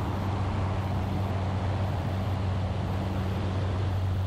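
Single-engine Zenith CH-750 Cruzer light aircraft in level flight: its engine and propeller make a steady drone with a low hum, mixed with the rush of airflow.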